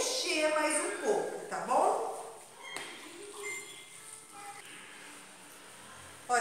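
A woman's voice talking for about two seconds, then quiet with a few faint short clinks and light rustling.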